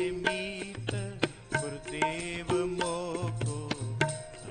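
Sikh Gurbani kirtan: two harmoniums sustain chords while tabla strokes keep a steady beat, with chanted singing over the top.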